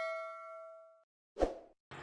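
Notification-bell 'ding' sound effect ringing out and fading away within the first second. A short soft hit follows about a second and a half in.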